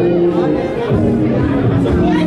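Loud electronic music with steady held synth notes, and people's voices chattering over it in a packed club crowd.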